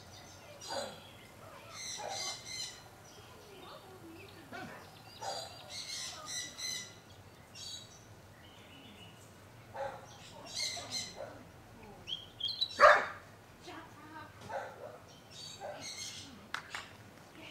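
Birds chirping in short scattered bursts of high calls, with one louder, sharper call that falls in pitch late on.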